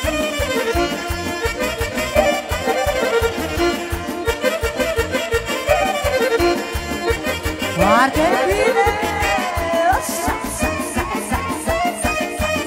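Live band playing fast Romanian dance music with a steady pounding beat, a saxophone leading the melody; about eight seconds in the saxophone plays a quick rising run into a wavering, ornamented phrase.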